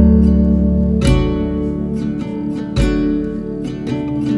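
Acoustic guitar music: plucked chords ringing out, with new chords struck about a second in and again near three seconds.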